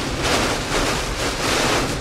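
Heavy rain and strong storm wind battering a moving vehicle, heard from inside the cab as a loud, steady rush that swells and eases in gusts.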